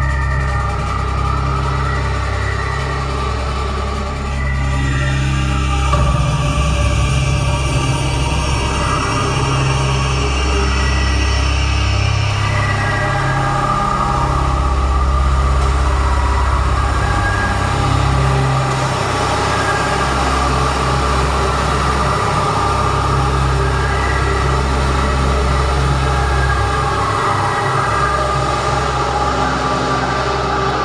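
Live synthesizer music with a dark mood: slow sustained chords over a deep bass that moves between long held notes.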